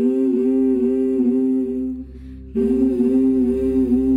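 Soundtrack music: voices humming long, wavering held notes in harmony over a low steady drone, in two phrases, the second beginning about two and a half seconds in.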